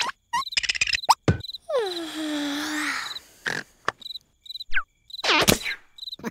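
Cartoon soundtrack with crickets chirping steadily in the background, broken by a string of short, sudden cartoon sound effects and the larva's drawn-out vocal cry that falls in pitch and then holds about two seconds in.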